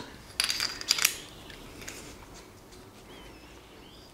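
A quick run of light metallic clinks with brief ringing, about half a second to a second in: the steel collet and threaded nose ring of a Clarkson milling chuck knocking together in the hand as they are fitted.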